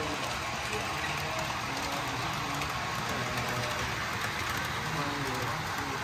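Model train of Penn Central diesel units and passenger cars running past on the layout track, a steady even noise, with faint voices talking in the background.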